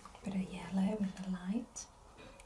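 A person's voice humming, a drawn-out "mm" held on one pitch for about a second and a half, rising slightly at the end.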